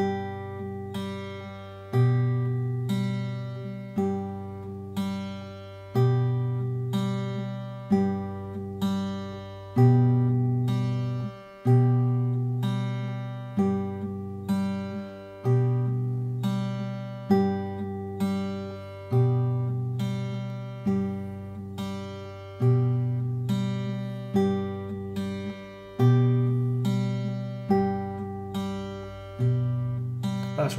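Acoustic guitar fingerpicked over a G chord: the thumb plays an alternating bass under pinches and single notes on the treble strings. The pattern runs in a steady, even rhythm, about one strong note a second with lighter notes between, each ringing into the next.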